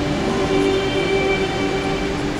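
A rondalla, a choir of mixed voices backed by acoustic guitars and a double bass, holding one long sustained chord.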